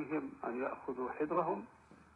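A man speaking, the voice thin and narrow-sounding like a radio or phone recording; the speech stops near the end.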